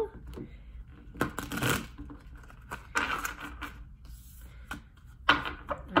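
A deck of oracle cards being shuffled in the hands: three short bursts of shuffling about two seconds apart.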